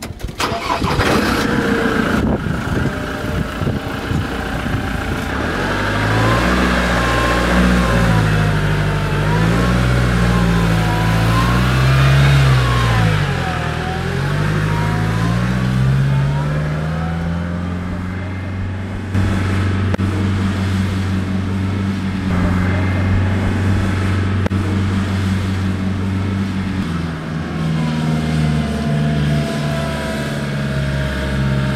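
Engine of an open light military off-road vehicle, heard from about five seconds in. Its pitch rises and falls several times as it is revved and driven, then holds a steadier pitch through the second half.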